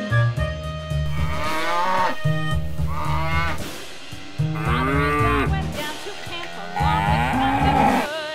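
Cattle mooing in several long, rising-and-falling calls over background music with a steady beat.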